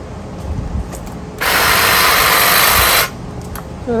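Ryobi 40V cordless hedge trimmer running in one steady burst of about a second and a half, starting about a second and a half in and cutting off suddenly, as it trims a last piece of hedge.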